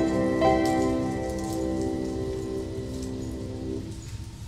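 Soft piano music: a chord comes in about half a second in and is held, fading gradually and stopping just before the end.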